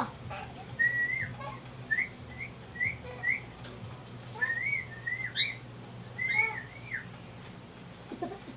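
Cockatiel whistling: a run of short, evenly spaced whistled notes, then longer warbling phrases, with one sharp high chirp about five seconds in.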